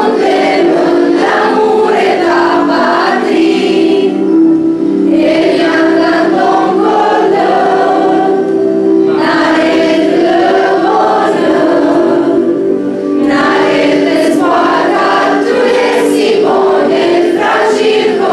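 A youth choir of mostly female voices singing together, in sung phrases with brief breaks between them.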